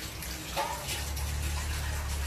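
Water running from a kitchen tap and splashing in a sink as things are washed by hand, with a short clink about half a second in.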